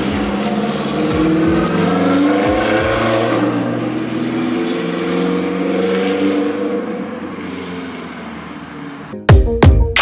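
A car engine running and revving, its pitch gliding, fading away over the last few seconds, with background music. Loud electronic music with hard beats cuts in near the end.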